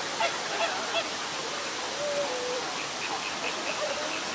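Flamingos calling: a few short goose-like honks over a steady rushing noise, with a run of quick high chirps starting near the end.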